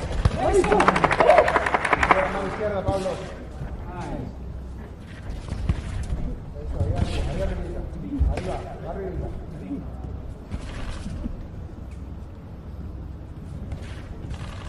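Ringside sound of a live boxing bout: voices shouting around the ring and sharp slaps of gloves landing, loudest in a burst of rapid cracks and shouts in the first two seconds, then occasional single impacts.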